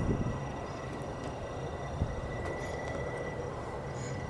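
Steady low background rumble with a faint thin high tone over it, and a single short tap about two seconds in.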